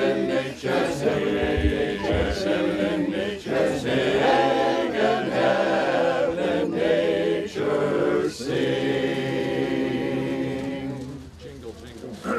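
Men's barbershop chorus singing a cappella in close four-part harmony, moving through sustained chords; the singing fades out about a second before the end.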